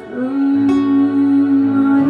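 A woman singing one long held note into a microphone, over guitar accompaniment, with a strum about two-thirds of a second in.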